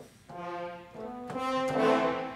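Sampled French horn section from Steinberg's Iconica library playing marcato, with accented attacks, demonstrating that articulation. Two notes, the second swelling louder near the end.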